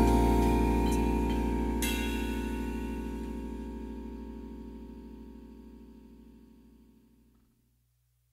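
The band's final chord ringing out, led by Rhodes electric piano over bass, with a light cymbal stroke about two seconds in. The chord fades steadily away and is gone about seven seconds in.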